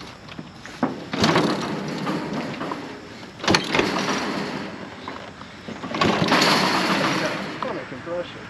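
Two-stroke dirt bike being kick-started: about three hard kicks, each turning the engine over against heavy compression with a short chuff, without it catching.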